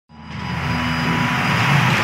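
Channel-logo intro sound effect: a swell of rushing noise over a deep rumble that rises from silence in the first half second and then holds.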